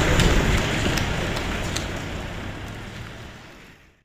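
A group of people clapping, the sound fading out steadily to silence by the end.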